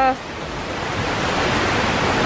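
Steady rush of a fast-running stream swollen with rain. A voice trails off at the very start.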